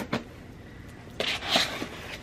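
Scissors cutting the packing tape on a cardboard box: a sharp click at the start, then a short scraping cut a little past halfway.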